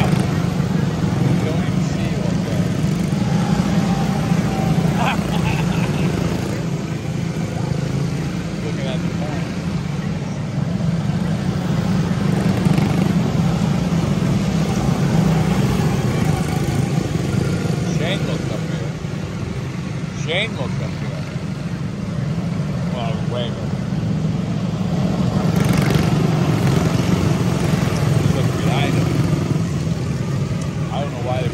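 A field of quarter midget race cars with small single-cylinder Honda engines running around a short oval. It is a dense, steady engine drone that swells and eases as the pack passes through the turn.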